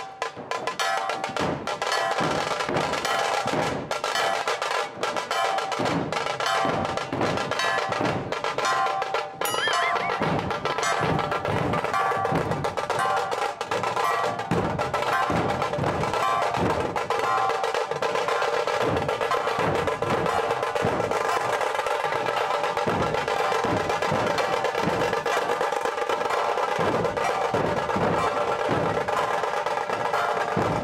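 Maharashtrian dhol drums beaten with sticks in a fast, steady rhythm, with rapid drum rolls on top: a dhol-tasha troupe playing.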